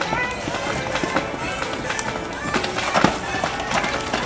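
Background music with a stepped melody line, mixed with voices.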